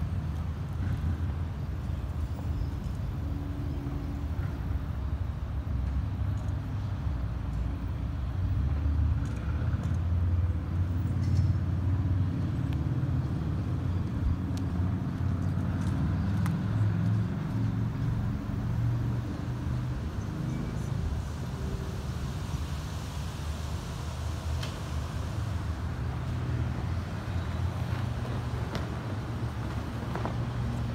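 Steady low rumble of road traffic and engines, a little louder around a third of the way in.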